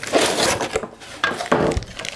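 A white metal power-supply enclosure slid out of and rubbing against its cardboard packaging, followed by a few light knocks as the metal box is handled, about one and a half seconds in.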